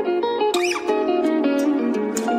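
Background music: a melody of short stepping notes over sustained lower tones, with a brief high gliding squeak about half a second in.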